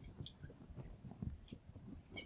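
Marker squeaking on a glass lightboard as words are written: a quick, irregular run of short, high squeaks and chirps.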